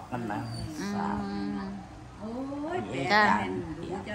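A woman's voice making drawn-out sounds rather than words: a steady held hum about a second in, then a rising, wavering wail near the end.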